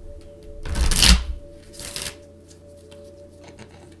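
A deck of tarot cards being shuffled by hand: a loud burst of card noise about a second in, a shorter one about two seconds in, then lighter rustling.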